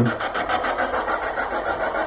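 Ghost box (spirit box) sweeping through radio stations, giving a rapid, even chopping of static and clipped radio fragments.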